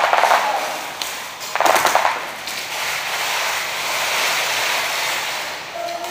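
Airsoft electric guns firing full-auto: a short burst of rapid clicking shots at the start, a second burst about a second and a half in, then a steady din of further, more distant firing.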